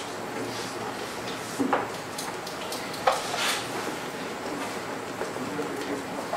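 Dry-erase marker writing on a whiteboard: a few short, scratchy strokes over steady room noise, the longest a little past halfway.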